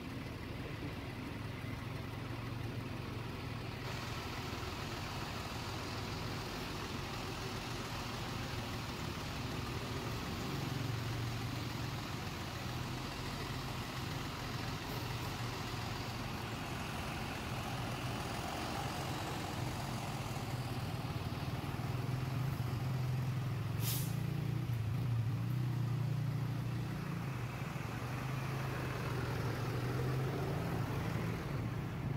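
Diesel engine of a large tour coach running at low speed, its low drone swelling twice as the bus pulls ahead, with a short air-brake hiss about three-quarters of the way through.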